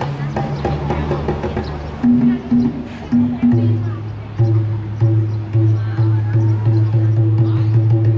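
Live Thai classical accompaniment to a khon masked dance drama: sharp percussion strikes in the first two seconds, then a low male voice in long held notes over the ensemble.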